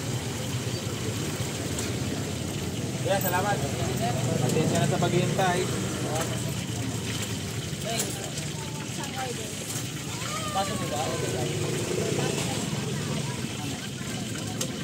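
Street ambience: indistinct voices of people talking over a steady low rumble of traffic, with the voices loudest about three to six seconds in.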